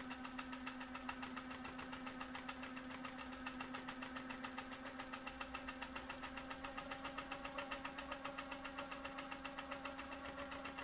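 Handi Quilter Capri sit-down quilting machine running steadily while free-motion quilting: a steady motor hum under an even, rapid patter of needle strokes, about ten a second.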